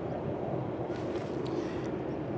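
Steady low rumble of outdoor background noise with a faint constant hum, and a few faint clicks between one and two seconds in.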